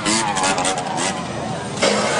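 A motorcycle engine revving up hard as the bike lifts onto its back wheel and pulls away through traffic, over the rush of street noise. A louder burst, with a voice, comes in just before the end.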